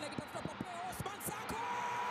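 Excited football commentary on an attack on goal, broken by sharp clicks. About one and a half seconds in, the commentator starts a long held cry on one pitch.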